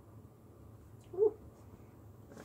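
A woman's short, drawn "ooh" of delight about a second in, over a faint room hum.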